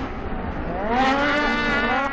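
Racing snowmobile engine accelerating. Its pitch rises for about half a second, then holds high and steady at full throttle.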